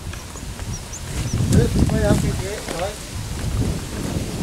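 Wind rumbling on the microphone, loudest in the middle, with a few short high bird chirps in the first second and a brief wavering pitched call or distant voice around the middle.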